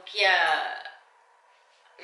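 A woman's voice saying one drawn-out word with falling pitch, then about a second of near silence.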